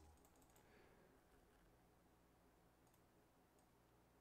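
Near silence: faint room tone with a few soft clicks, a small cluster about half a second in and another about three seconds in.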